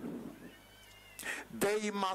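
A short, nearly quiet pause, then a man's voice through a microphone starts speaking about one and a half seconds in.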